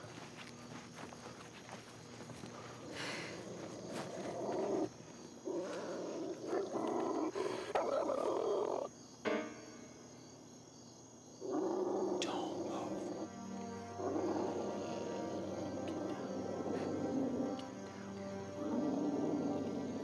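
Low, rough animal growls in a run of bursts of a second or two each, with a quieter pause about ten seconds in, over a tense film score with sustained tones.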